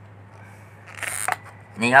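Pliers working a cut-off stub of PVC pipe out of a glued PVC coupling whose glue has been softened by boiling: a short scrape about a second in, ending in a click.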